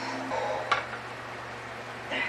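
Kitchen stovetop cooking sounds: a single sharp click of a utensil against a pan a little under a second in, over a low steady hum.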